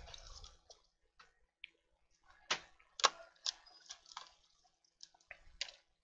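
Scattered light clicks and taps of a laptop hard drive and screwdriver being handled as the drive is worked out of its bay in the laptop's base. The sharpest clicks come about two and a half and three seconds in.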